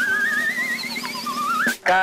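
A radio show sound-effect jingle played to reveal a quiz answer: a warbling, whistle-like tone with vibrato that glides slowly upward over a low held note, then a short rising warble near the end.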